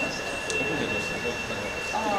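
Indistinct voices of people talking, over two steady high-pitched tones.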